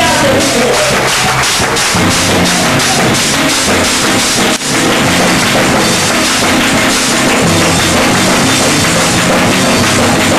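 Live church band playing an up-tempo groove: electric bass guitar with a drum kit, cymbal strokes about four a second through the first half.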